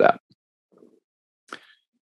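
A man's voice finishes a word, then near silence, broken by a faint soft sound and a single short click about a second and a half in, before speech resumes.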